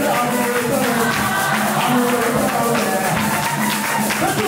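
Live church worship music: a group singing over a steady percussion beat, with hands clapping.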